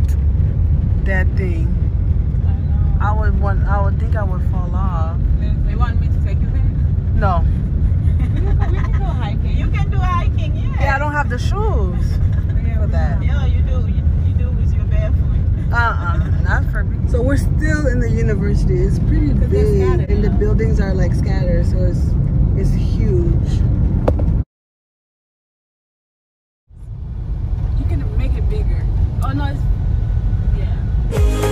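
Steady low rumble of a car on the road, heard from inside the cabin, with a voice over it. Near the end the sound cuts out completely for about two seconds, then fades back in.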